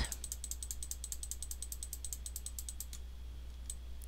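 Faint computer-mouse clicking, a fast even run of about ten clicks a second for about three seconds, then a single click near the end, as the on-screen view is zoomed in.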